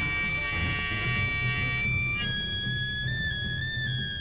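Saxophone holding a long, high, overblown note, then jumping to a higher note about two seconds in and holding it with slight wavers in pitch, over a low drum rumble.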